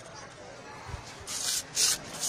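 A spoon scraping and rubbing powdered herbs around a black mortar during grinding: a low, steady rasp, then two louder scraping strokes in the second half.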